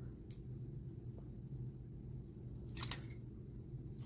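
Faint plastic clicks from a Transformers Masterpiece Soundwave action figure as its gun is fitted into its hand and it is posed: a few short clicks, the clearest about three seconds in, over a steady low hum.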